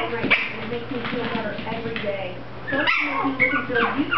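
Mi-Ki puppies yipping and whimpering as they play-fight, with a short knock about three seconds in.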